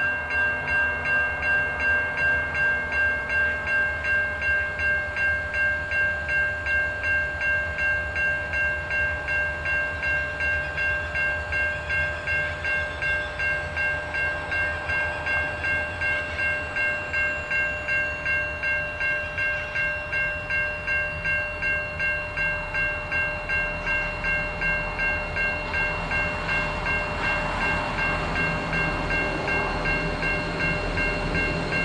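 Level crossing bell ringing at about two strokes a second, with a low rumble of an approaching diesel grain train that grows stronger near the end as the locomotives draw close.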